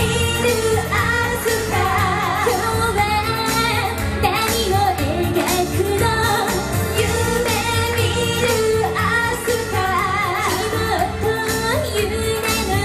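Women singing a Japanese pop song live into microphones over accompanying music with a steady beat.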